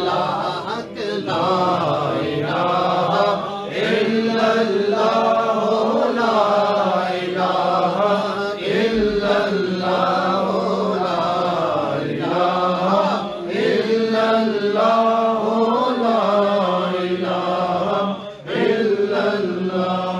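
Unaccompanied male voices chanting the refrain of an Urdu naat in a continuous melodic line, with brief breaks for breath.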